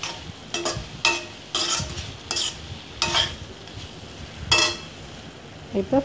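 Steel spatula stirring vegetables in a metal kadai, a series of about seven scrapes and clinks against the pan with a faint ring, over a low sizzle of frying.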